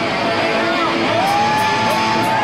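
Live rock band playing loudly; about halfway through, a long high note slides up and is held, over drums with a steady cymbal beat.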